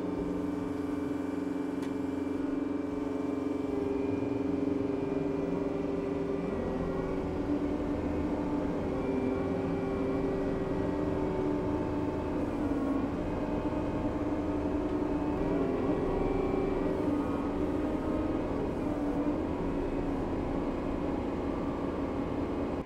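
Kubota tractor's diesel engine working under load at steady high revs while it pulls on tow straps to free a stuck skid steer. The pitch sags and shifts slightly a few times as the load changes.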